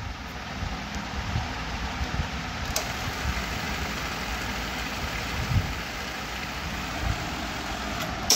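Cassette deck of a Harman HTA-56T cassette amplifier rewinding a tape: the steady whirr of the transport motor and fast-spooling tape, with a light click about three seconds in.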